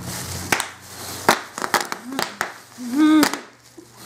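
Bubble wrap crackling and popping in a run of sharp, irregular snaps as the man bound in it is stirred, with a short moan about three seconds in.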